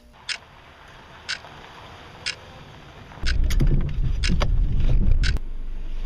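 Three sharp clicks about a second apart, then about three seconds in a loud low rumble of wind on the microphone begins, with scattered clicks over it, easing to a lower rumble near the end.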